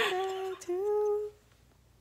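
A woman's voice humming two long held notes, the second rising slightly, stopping a little over a second in.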